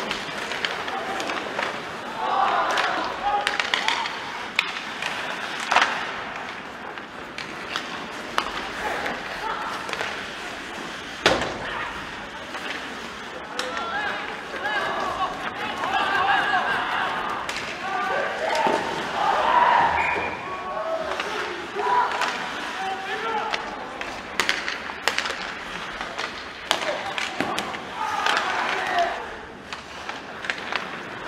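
Live ice hockey rink sound: players' untranscribed shouts and calls echoing in the arena, broken by several sharp knocks of sticks, puck and bodies against the boards.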